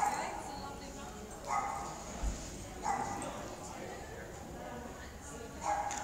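A dog barking: four short barks a second or more apart.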